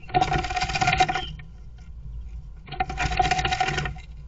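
A great tit scratching and pecking inside a wooden nest box while it works at the first nesting material. It comes as two bursts of rapid scratching and tapping, each about a second long.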